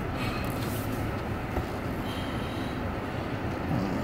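Car running, heard from inside the cabin as a steady low rumble while the car backs slowly out of a parking space.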